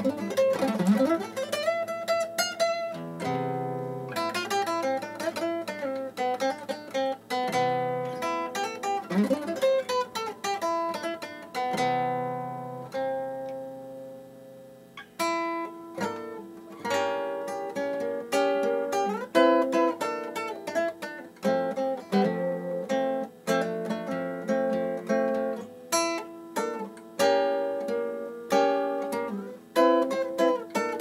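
Nylon-string classical guitar played solo with the fingers: melodic lines over chords. About halfway through, a held chord rings and fades, then a quicker passage of notes starts.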